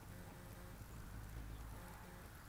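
Faint, low, steady hum of a hummingbird moth's wings as it hovers at the flowers, swelling slightly past the middle.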